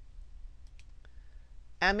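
A few faint clicks of a computer mouse, then a woman's voice begins near the end.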